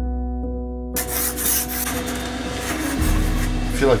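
Background music with held notes and a steady bass. About a second in, a dry rubbing, scraping noise on the wooden countertop starts and keeps going.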